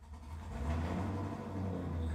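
A car outside running with a steady low rumble, heard from indoors, swelling in over the first half second.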